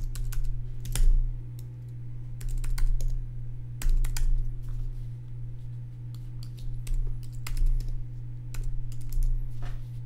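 Computer keyboard typing: irregular keystrokes, some in quick clusters, as a six-digit trading password is entered. A steady low hum runs underneath.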